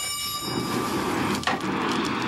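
Charcoal fire in a Japanese swordsmith's forge, burning and crackling, with one sharper crack about one and a half seconds in.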